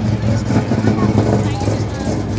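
A car engine idling steadily, a low even hum, with voices in the background.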